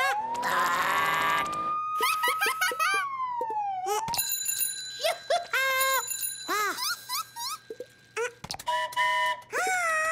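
Cartoon sound effects: a police-siren wail sliding down, up and down again over the first few seconds, then ringing bell-like tones. A chick's high squeaky chirping voice comes and goes throughout.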